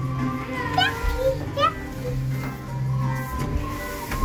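Children's voices at play, with two short high rising calls in the first two seconds, over steady background music.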